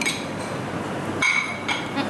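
A metal spoon clinking against a bowl twice: a light clink at the start, then a brighter, ringing clink a little over a second in, over steady room noise.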